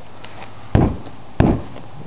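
Two sharp knocks, about two thirds of a second apart, of a hand striking a sheet of ice frozen onto a car hood, cracking the ice.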